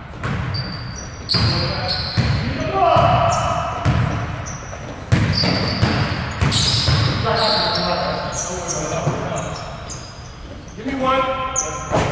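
A basketball being dribbled on a hardwood gym floor, with repeated bounces, and sneakers squeaking as players move. Players shout and call out in short bursts. Everything echoes in the large gym.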